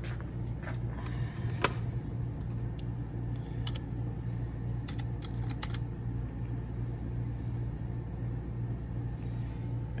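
Computer keyboard keystrokes as a short device ID is typed into a search box: a scattered handful of clicks through the first six seconds or so, over a steady low hum.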